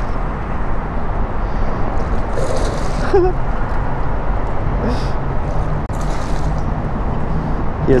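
Foul-hooked carp splashing at the surface beside the boat a few times, over a steady rushing noise.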